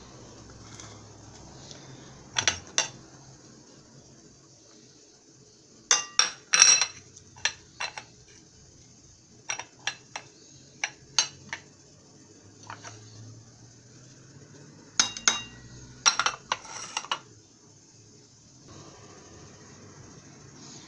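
Kitchen utensils and containers clinking and tapping against a bowl while stuffing ingredients are put in: scattered sharp clinks, some single and some in quick clusters, the busiest bursts about six seconds in and again around fifteen to seventeen seconds.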